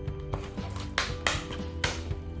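Scissors cutting through the side of a thin plastic nursery pot: three or four sharp snips, the loudest in the second half, over steady background music.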